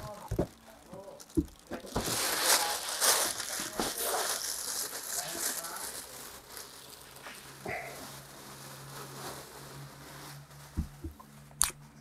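A thin plastic bag crinkling and rustling as it is pulled off a large loudspeaker driver, loudest a couple of seconds in and fading after about six seconds. A few short knocks follow near the end.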